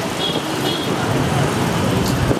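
Street traffic noise: a motor vehicle's engine running steadily, with faint background voices.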